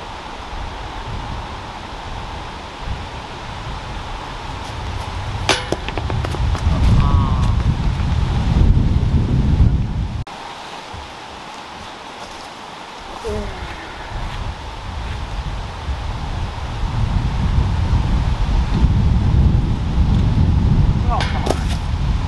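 Wind buffeting the microphone in gusts, a low uneven rumble that swells and fades. A single sharp knock with a short ring about five seconds in, and a quick cluster of sharp knocks near the end.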